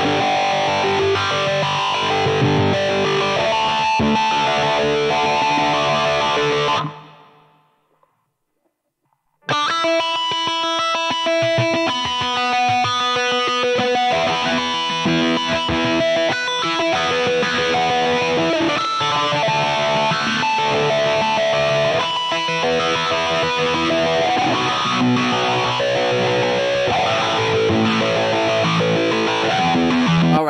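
Electric guitar played through a Line 6 POD Go amp-modeller rock preset with distortion, riffing and picking single notes. The playing fades out about seven seconds in, leaves a gap of about two seconds, then starts again and runs on.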